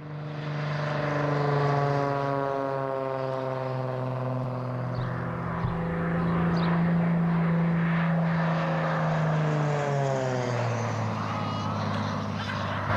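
Light propeller airplane flying low past: a steady engine drone whose pitch slowly falls as it goes by, dropping again and settling lower near the end.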